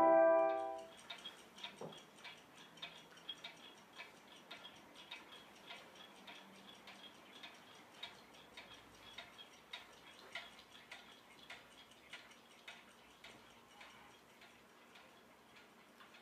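Many mechanical clocks ticking together, faint, uneven overlapping ticks at several a second, growing fainter near the end.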